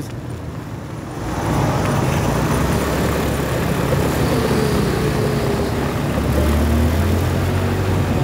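A vehicle driving along a city street, its engine and road noise growing louder about a second in and then holding steady, with a faint falling whine in the middle.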